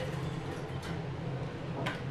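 Elevator car call button pressed, a sharp click near the end, with a fainter click a little under a second in, over the steady low hum of the cab.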